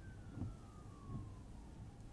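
Quiet car-cabin hum, low and steady, with one faint thin tone falling slowly in pitch across nearly two seconds.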